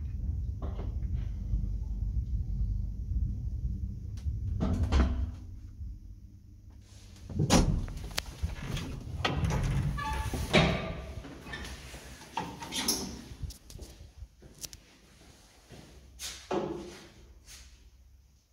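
Old ZREMB residential elevator car running in its shaft with a low rumble, then stopping with a clunk about five seconds in. The manual swing landing door is then pushed open with loud knocks and clatter, and it swings shut with thumps near the end.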